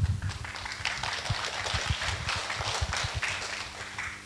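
Congregation clapping: a dense patter of many hands for about three and a half seconds, thinning out near the end.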